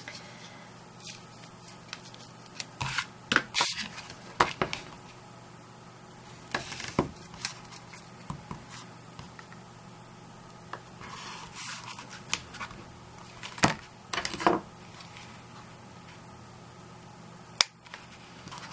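Hands working double-sided adhesive tape and card: tape pulled off the roll and pressed along the edge of the paper, giving scattered rustles, scrapes and clicks. A sharp snip near the end as small scissors cut the tape at the roll.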